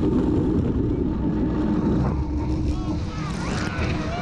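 Tour jet boat running at speed across open water: a steady engine drone under rushing water and wind on the microphone. Passengers' voices rise and fall over it from about two seconds in.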